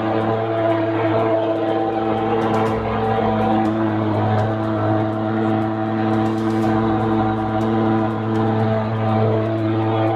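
Pulse-jet thermal fogging machine running, a loud steady drone that holds its pitch.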